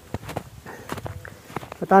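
Footsteps in snow: a handful of short, irregular steps. A man starts speaking just at the end.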